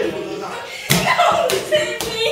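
A large inflatable exercise ball being thrown and hitting its target, with one sharp smack about a second in, over excited shouting voices.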